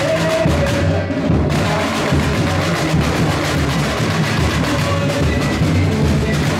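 Samba music with steady, driving drum and percussion rhythm, played loud for a dancer.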